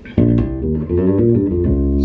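Skjold Greyling passive four-string electric bass played fingerstyle: a quick run of plucked notes, ending on a long held low note near the end.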